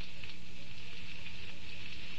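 An open fire burning: a steady, even hiss with a faint low hum underneath.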